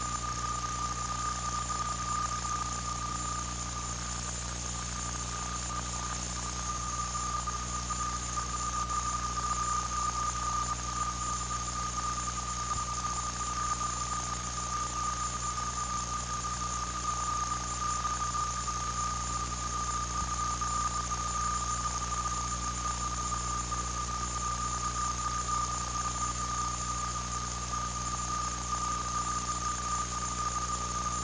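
A constant high-pitched electronic whine with a low hum and hiss beneath it, unchanging throughout: interference noise on an old videotape recording, not a sound from the game.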